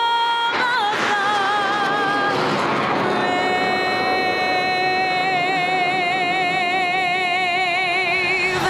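A singer holding the closing notes of the national anthem, ending on one long note with vibrato from about three seconds in. Underneath is the rushing noise of the jet fighter flyover.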